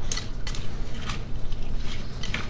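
A spatula stirring chicken and mixed vegetables in a thick creamy sauce in a glass mixing bowl, with scattered small clicks. The chicken is still partly frozen, which makes the filling hard to mix.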